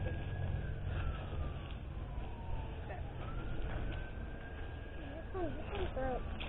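A siren wailing faintly: its single tone slowly falls over the first two seconds, then rises again and holds before fading near the end, over a steady low rumble.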